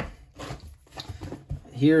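A stack of trading cards in plastic sleeves and holders being handled and picked up off a table: a few light clicks, with faint rustling between them.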